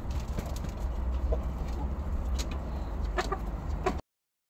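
Hens clucking a few times, mostly near the end, while pecking feed from a split-bamboo trough, with a few sharp taps, over a steady low rumble.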